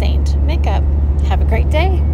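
A woman's voice speaking briefly over a loud, steady low hum.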